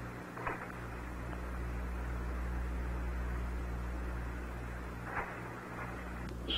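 Steady hiss over a low, even hum from an old broadcast audio line, with no speech, and two faint brief blips, one about half a second in and one near the end.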